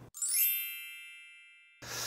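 A bright chime sound effect for a video transition, struck once just after the start. It rings on with many high, bell-like tones that fade away, the highest ones first, and it cuts off abruptly after about a second and a half.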